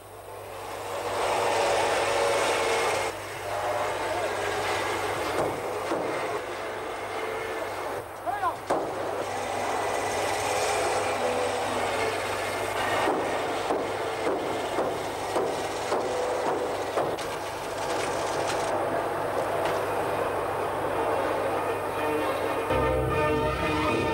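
Workshop din from locomotive boiler repair on an old film soundtrack: a continuous clatter of metalworking tools and machinery with scattered sharper knocks, over a steady low mains hum.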